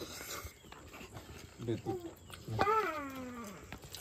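A person's voice, quiet, with a couple of short sounds and then one long call that falls steadily in pitch.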